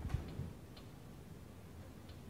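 A soft low thump right at the start, then a faint click, over quiet room tone.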